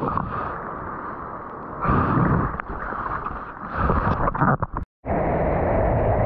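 Muffled rush of surf and moving water picked up by a waterproofed action camera at the water's surface, swelling twice as waves wash past. After a momentary gap near the end it becomes a steadier, louder rush of whitewater and wind as the board rides through the foam.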